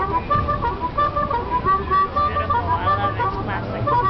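A live blues performance by a street musician: a melody of held notes that steps up and down, with a voice briefly over it.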